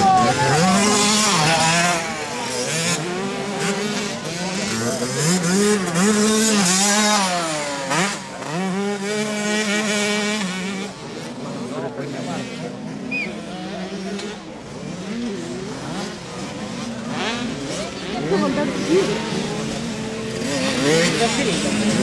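Several small two-stroke 65cc motocross bikes revving hard around the dirt track, their engine notes repeatedly climbing and dropping through the gears. The engines are loudest in the first half, ease off after about eleven seconds, and grow louder again near the end.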